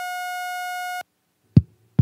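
A steady, buzzy electronic beep on one pitch, held for about a second and cut off abruptly: an audio glitch in the recording chain. After a short silence, a couple of low, dull thumps.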